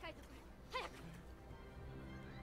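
Film soundtrack: a steady music bed with two falling, whining cries, a faint one at the start and a louder one about three-quarters of a second in.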